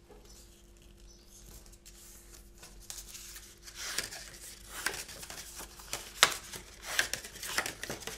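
A strip of thin card being folded and creased by hand to form a gluing tab: soft rustling and crinkling of the card, with a few sharp crackles in the second half.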